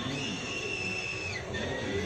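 A woman's long high-pitched scream from a horror film's soundtrack, played through a television's speaker; it holds for about a second and breaks upward as it ends. A second, lower cry starts near the end.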